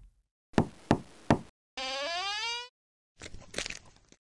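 Three quick knocks on a wooden door, followed by a short rising pitched creak.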